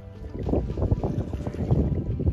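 Wind buffeting the microphone, an uneven low rumble that swells in gusts.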